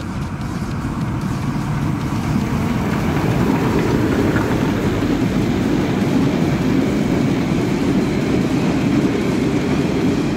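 Steam-hauled narrow-gauge passenger train passing close by: the rolling rumble of its coaches' wheels on the rails grows louder over the first three seconds, then holds steady.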